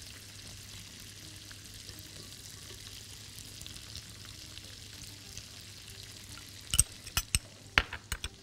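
Butter, raisins and cashews frying gently in a pot: a faint, steady sizzle. Near the end come several sharp clinks of a spoon against glass bowls.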